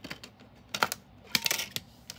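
Plastic CD case being handled and opened: a handful of sharp plastic clicks, the loudest a little before and just after the middle.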